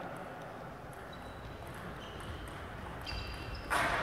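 Table tennis rally: the celluloid ball ticks off bats and table at an irregular pace, with shoes squeaking on the sports-hall floor. A loud sharp crack comes near the end.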